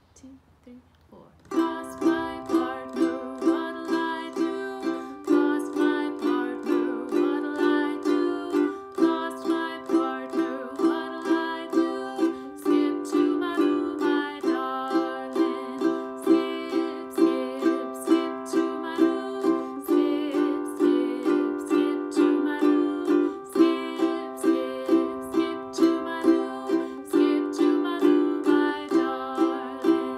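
Ukulele down-strummed in steady quarter notes, moving back and forth between C and G7 chords. The strumming starts about a second and a half in, and the last chord rings out at the end.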